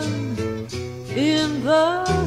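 Song with a woman singing a slow, sliding melody with vibrato over acoustic guitar; one held note fades early on and a new phrase rises and dips in the second half.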